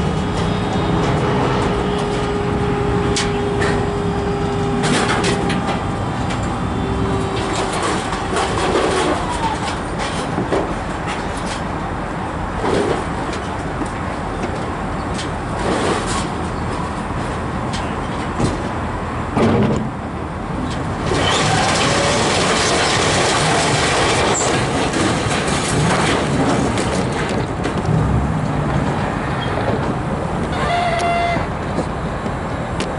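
A load of scrap metal being dumped from a hydraulic dump bed as the bed is raised. A steady whine runs for the first several seconds, with scattered metal clanks and knocks throughout. About two thirds of the way in, a louder, continuous noise sets in.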